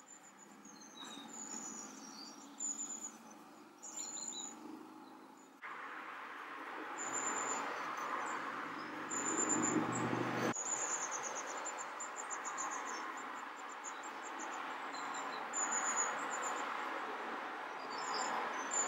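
Faint, steady hiss of heavy rain outside, with short high chirps recurring every second or two. The rain noise jumps louder about five and a half seconds in.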